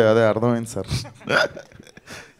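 Only speech: a man talking into a handheld microphone, a short phrase and then a brief pause.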